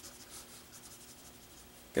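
Marker pen drawing short strokes on paper: a series of faint scratchy strokes as beard lines are inked.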